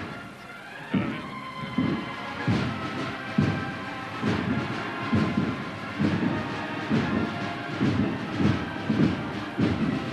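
A Holy Week cornet and drum band (banda de cornetas y tambores) playing a processional march. Held brass cornet notes ring over heavy, regular drum beats that quicken from a little over one a second to about two a second in the second half.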